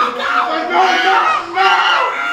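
Anguished wailing and crying out, several voices overlapping, with a brief dip about one and a half seconds in.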